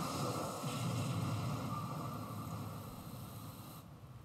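A steady rushing noise that slowly fades and cuts off near the end.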